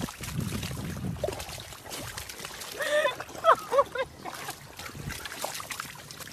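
A dog wallowing in thick wet mud, with sloppy squelching and slapping noises as it plunges and rolls. A person's voice breaks in briefly near the middle.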